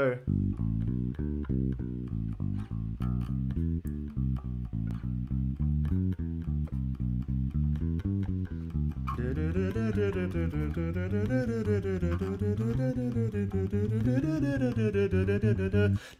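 Bass guitar playing an even run of single notes: an arpeggio exercise climbing 1-2-3-5 and falling 4-3-2-1 through the chords of the G major scale. From about nine seconds in a voice sings along with the line.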